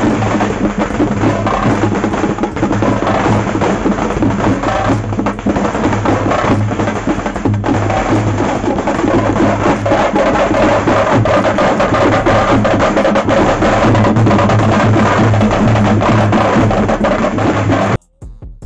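Loud, fast drumming by a festival procession drum band, drums beaten with sticks in a dense, driving rhythm. It stops abruptly at the very end.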